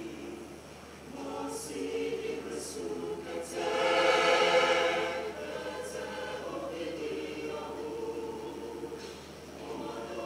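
Mixed choir of women's and men's voices singing a hymn in Ebira, swelling to its loudest about four to five seconds in before easing back.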